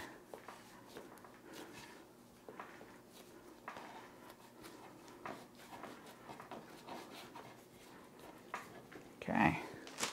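Faint soft rubbing and light taps of hands rolling and pressing bread dough into a log on a wooden cutting board.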